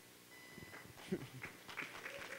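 Faint laughter from the speaker and the audience after a joke, building near the end.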